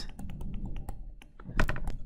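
Pen stylus tapping and scratching on a touchscreen during handwriting: a run of small clicks, with a louder knock about a second and a half in.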